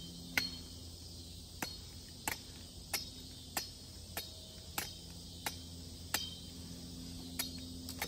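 Machete blade chopping and shaving at a wooden stick to sharpen it into a spear: sharp knocks about every two-thirds of a second, around ten in all. Insects chirr steadily behind it.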